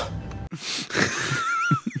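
A low hum from the film soundtrack cuts off about half a second in. A man's wheezy, breathy laugh follows, about a second long, with a thin wavering whistle in it.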